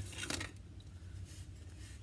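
A few faint scratchy rubbing strokes of an abrasive pad on a brass cartridge case in the first half second, scrubbing off rust, then only a low room hum.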